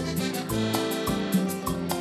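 A live cumbia band playing an instrumental passage between sung lines: held chords over a bass line and a fast, even percussion pattern.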